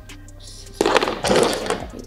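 Razor blade slid down a lock of straight hair, two quick scratchy rasps starting a little under a second in.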